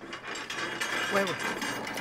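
Metal sheet gate rattling as it is handled, a fast run of clicks, with a woman calling out "Wewe" about a second in.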